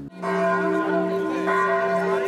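Church bells ringing, several sustained tones overlapping, with a fresh strike about one and a half seconds in.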